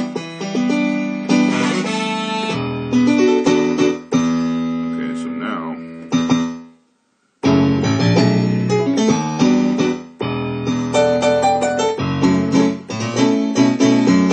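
Roland FA-06 synthesizer played as a layered studio set, a piano sound on top of brass, in full chords and runs. The playing stops briefly a little past halfway through, then starts again.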